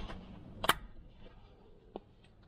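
A manual wheelchair's wheel being handled: one sharp click about two-thirds of a second in, and a fainter click near the end.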